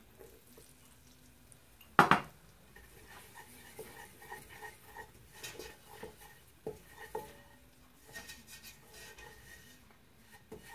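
A single sharp knock about two seconds in, then a wooden spoon scraping and tapping around a stainless steel pot, stirring flour into melted ghee to cook a roux for white sauce.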